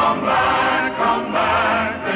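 A choir singing a melody with instrumental accompaniment, in the manner of a 1940s film soundtrack.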